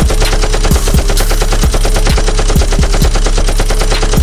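Automatic-weapon gunfire sound effect, a long run of rapid, evenly spaced shots, laid over the beat's steady bass note and kick drum.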